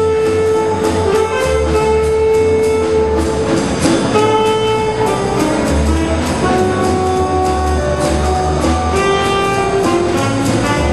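Small jazz combo of saxophone, piano, bass and drums playing a swing tune. The saxophone holds long notes over the bass and a steady cymbal beat.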